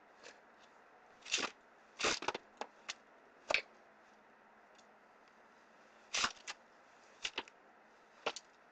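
Playing cards being gathered up off a floor: a scatter of short scrapes and rustles, several in the first few seconds and a few more near the end.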